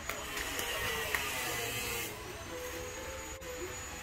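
Power-tool noise carrying over from a neighbour's yard: a steady hissing grind, which the uploader takes for grinding. It cuts off about halfway through, leaving a faint steady hum.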